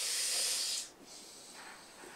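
A person's breathy hiss of air through the teeth, lasting just under a second, then only a faint hiss.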